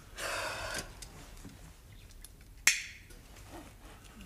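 A beer can's ring-pull snapped open about two-thirds of the way in: one sharp pop with a short hiss of gas. A brief rush of soft noise comes near the start.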